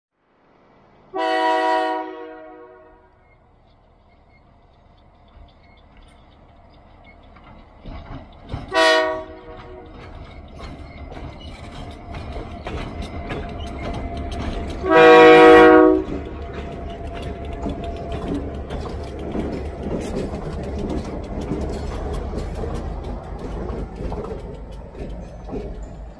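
Diesel locomotive horn blowing three chord blasts: a long one, a short one about nine seconds in, and the loudest and longest at about fifteen seconds. Under the horn, the low rumble of the locomotives' diesel engines and wheels on the rails builds as the train draws near and passes.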